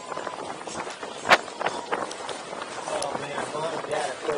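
Mountain bike rolling fast down a dirt track, tyre and wind noise on a helmet-mounted camera, with a sharp clack from the bike about a second in and a few lighter clicks. Indistinct voices come in near the end.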